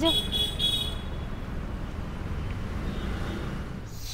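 City street traffic noise, a steady low hum of passing vehicles, with three short high-pitched beeps in the first second.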